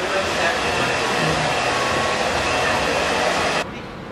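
Steady rushing whir of an electric hair tool running at close range, with faint voices underneath; it cuts off abruptly about three and a half seconds in.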